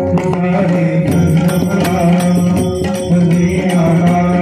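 Marathi devotional folk song (gavlan) sung by men's voices, with held, chant-like notes over a steady beat of small hand cymbals and drum strokes.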